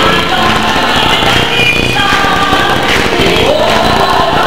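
Gospel choir singing together with a female soloist on a microphone.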